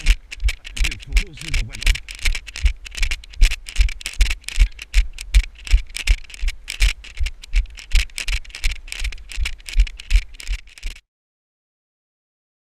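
Running stride jolting a body-worn camera: a steady beat of footfall thumps, about three a second, each with a rattle. The sound cuts off abruptly about eleven seconds in.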